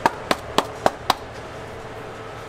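A quick run of five sharp knocks, about four a second, stopping a little after a second in.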